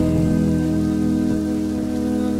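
Synth-pop instrumental passage: sustained synthesizer chords over a held bass, with the drums dropped out. The beat comes back just after.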